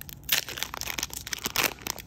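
Foil wrapper of a Magic: The Gathering booster pack being torn open and crumpled by hand: a rapid, irregular crackling and crinkling.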